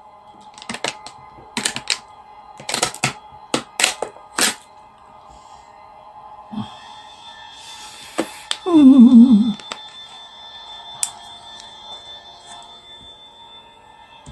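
TV drama soundtrack during a fight: a run of sharp knocks and thuds in the first four seconds, then a held eerie tone from the score, with one short falling groan about nine seconds in.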